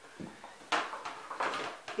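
About four short knocks and rustles from handling a plastic margarine tub, as a lump of cooking margarine drops into an empty stainless-steel pot.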